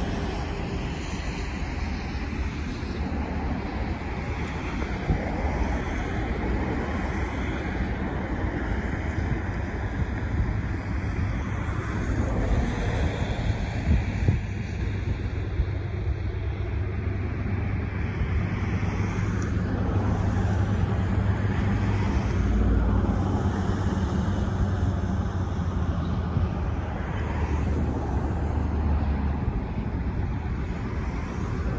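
Steady outdoor road-traffic rumble, with wind buffeting the microphone.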